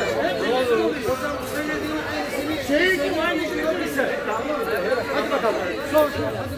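Several people talking over one another in a group: overlapping chatter.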